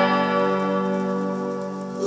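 A strummed chord on a semi-hollow electric guitar ringing out, several notes sustaining together and slowly fading.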